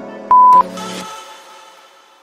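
A workout interval timer's long electronic beep, the last of a countdown, marking the end of a work interval. Background music fades away after it.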